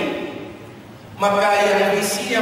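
Speech only: a man lecturing in Indonesian into a handheld microphone. He breaks off for about a second in the first half, then resumes.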